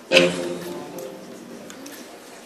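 A single chord struck once on an amplified electric guitar, with a sharp attack, ringing out and fading over about a second and a half. A few faint ticks follow near the end.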